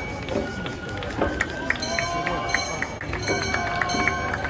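Gion-bayashi festival music from a hoko float: small bronze hand gongs struck in a quick, even rhythm, each strike ringing on, joined by sustained flute-like tones from about a second in. Spectator voices murmur close by throughout.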